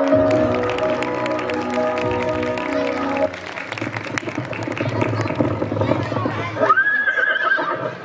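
Music stops about three seconds in and gives way to a played-back horse sound effect: hoofbeats, then a single horse whinny that rises and holds near the end.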